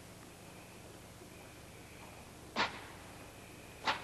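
A gymnast's feet landing on a balance beam: two sharp thuds a little over a second apart, the first about two and a half seconds in, over a faint steady hiss.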